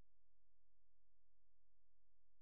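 Near silence: a faint, unchanging low hum floor with no distinct sound.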